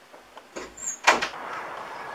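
Wooden interior door swung shut, closing with a single bang just after a second in. A steady hiss follows.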